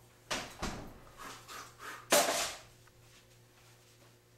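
Kitchen clatter of a foil-covered metal baking pan being pulled from an oven and set down on the stovetop: a few knocks and clinks, with the loudest bang about two seconds in.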